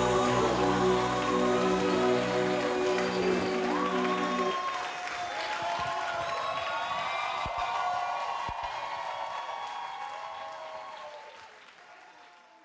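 A held final chord of the routine's music stops about four and a half seconds in, giving way to audience applause and cheering that fade out near the end.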